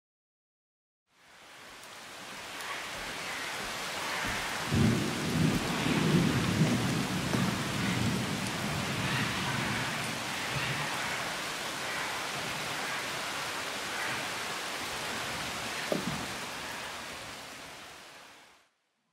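Steady heavy rain in a rainforest thunderstorm, starting about a second in. Thunder rumbles for a few seconds about a quarter of the way through, and a short sharp crack comes near the end.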